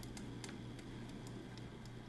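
Quiet room tone: a steady low hum with a few faint, short clicks.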